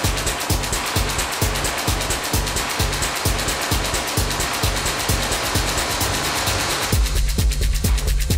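Techno DJ mix: a steady kick drum beat, about two strokes a second, under a dense, hissy layer of synth noise and hi-hats. About seven seconds in, the middle of the sound thins out and a heavier bass line takes over.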